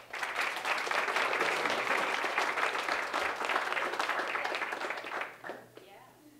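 Audience applauding, a dense run of many hands clapping that starts at once and dies away about five and a half seconds in.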